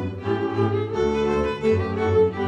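Slovak folk string band of fiddles and a double bass playing a roskazovačky dance tune from Očová, with bowed fiddle melody over low bass notes.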